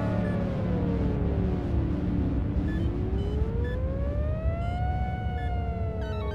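A slow, siren-like wail that falls over about two seconds, rises again to a peak about five seconds in and starts to fall, over a steady low rumble. Short high electronic beeps are dotted through it.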